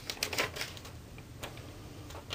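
A sheet of paper being handled and lifted, giving a few short, sharp crackles and rustles.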